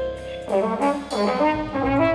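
High school big band playing jazz with the brass to the fore, trumpets and trombones prominent. After a brief dip in volume, the band plays a run of short, separate notes with some bends in pitch.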